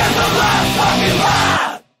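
Hardcore punk band playing with yelled vocals, the song cutting off suddenly near the end.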